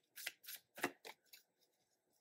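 Tarot deck being shuffled by hand: a handful of faint, quick card swishes and taps over the first second and a half.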